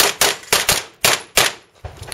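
Pistol shots fired in close pairs at targets: two quick pairs about a quarter-second apart each, then a single last shot a little over a second in, each crack followed by a short echo.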